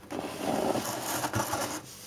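Cardboard doll box being turned by hand on a wooden tabletop: uneven rubbing and scraping of cardboard against the wood and the hand, starting just after the start and easing off near the end.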